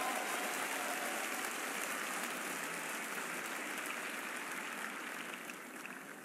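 Arena audience applauding, the clapping fading away gradually.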